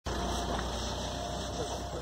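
Steady low hum, like an engine running.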